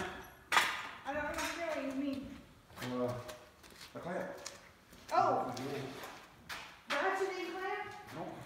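Mostly people talking back and forth, with a sharp knock about half a second in.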